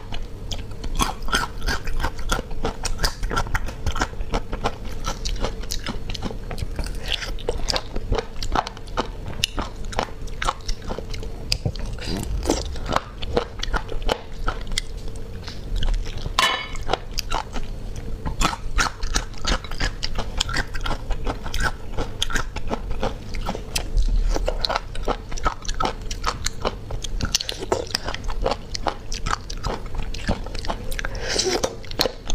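Close-miked eating of sea snails in a spicy sauce: sucking the meat out of the shells and chewing, with a dense run of small sharp clicks and crunchy bites.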